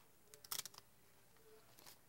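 Near silence with a few faint paper rustles about half a second in, from a magazine-page cutout being handled and folded by hand.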